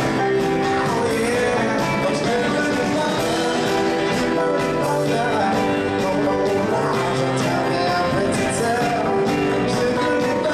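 Live soul band playing: a male lead singer sings over drums, electric guitar and bass guitar.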